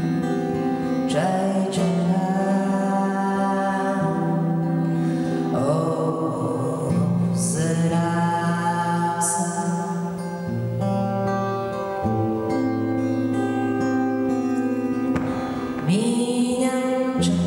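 A woman singing in long held notes, accompanied by a strummed acoustic guitar and an electric bass guitar.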